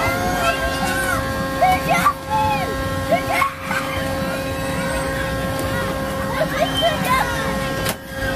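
Outdoor fairground ambience: a steady machine hum holding one pitch, with indistinct voices calling and chattering in the background.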